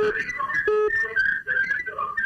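A caller's voice heard through a poor telephone line, broken up and garbled into flat, whistle-like tones, with a short steady whistling tone about two-thirds of a second in.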